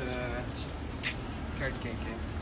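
A brief voice, with the steady low rumble of street traffic under it.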